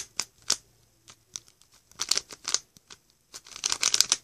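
Rubik's cube layers being turned by hand: quick plastic clicks and clacks in short flurries, near the start, about two seconds in and again near the end.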